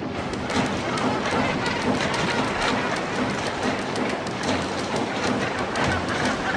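Splashing and bubbling water from gannets diving into a sardine shoal: a dense rush of noise with many sharp splash-like hits.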